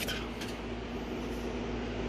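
A steady low mechanical hum with an even hiss over it, with no distinct knocks or clicks.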